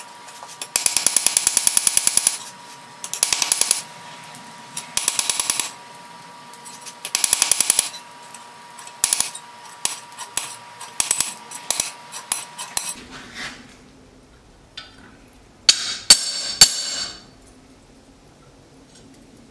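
Hand hammer forging a red-hot leaf-spring steel knife blade on an anvil: four rapid bursts of ringing blows, then single strikes spaced about half a second apart. Near the end come a few louder, sharper ringing metal strikes.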